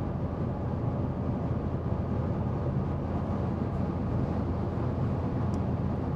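Steady, low road and engine noise heard inside the cabin of a moving car.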